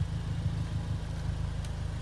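A Ford Fiesta ST2's turbocharged engine idling, heard from inside the cabin as a steady low rumble.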